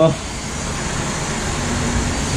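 DJI Mavic Pro's internal processor cooling fan running with a steady hiss: the fan is working.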